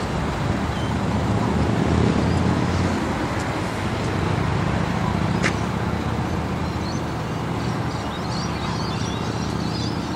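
Steady road traffic noise from vehicles passing on busy urban roads, a continuous low rumble with one brief sharp click about five and a half seconds in.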